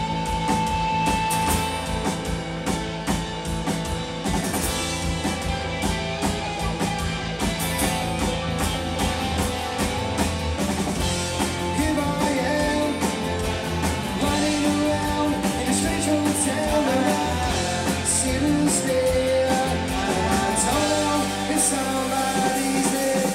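A Britpop-style indie rock band playing live: electric and acoustic guitars, bass and drum kit, with lead vocals over the second half.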